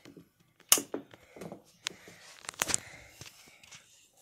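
A light switch clicks sharply under a second in, followed by scattered fainter clicks, knocks and rustling of handling and movement.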